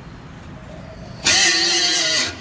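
A sudden loud rush of hissing noise starting just past the middle and lasting about a second, with faint pitched bands inside it.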